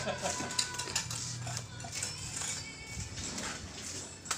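Mason's steel trowel scraping mortar and tapping against concrete hollow blocks, with scattered light clinks and scrapes.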